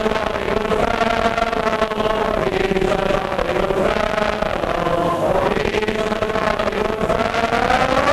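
A large crowd of men singing together in unison, holding long notes that rise and fall slowly.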